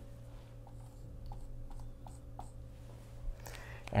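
Dry-erase marker writing on a whiteboard: a few short, faint strokes over a steady low room hum.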